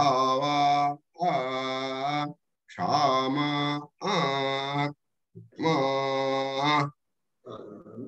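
A man chanting mantras in a level, held voice, in about five phrases of roughly a second each with short pauses between them.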